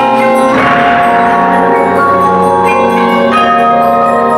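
Percussion ensemble playing ringing, held chords on mallet keyboard instruments, with a brief wash of noise about half a second in.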